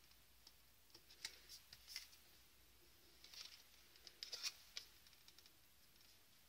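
Faint rustling and light clicks of cardstock being handled and pressed together by hand, a few soft sounds in the first two seconds and a cluster again between about three and four and a half seconds.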